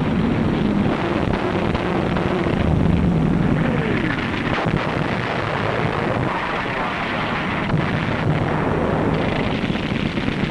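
Battle sound effects on an old narrow-bandwidth film soundtrack: a dense, continuous rumble of explosions and gunfire, with a few rising and falling whistles in the middle.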